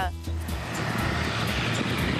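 Combine harvester running steadily while harvesting soybeans: a continuous engine and machine noise that sets in just after the start.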